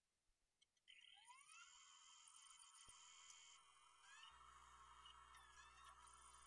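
Near silence, with only faint steady electronic tones and a few rising glides from about a second in.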